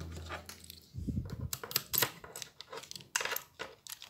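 Key being turned in the lock cylinder of a Volkswagen Saveiro G6 tailgate handle assembly to test the mechanism: a soft knock about a second in, then a run of small sharp clicks as the cylinder, cam and spring-loaded parts move.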